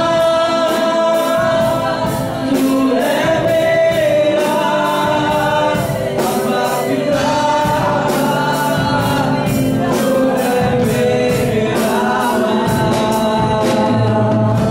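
Live Hindi praise-and-worship song: men singing into microphones over a strummed acoustic guitar, with a steady beat throughout.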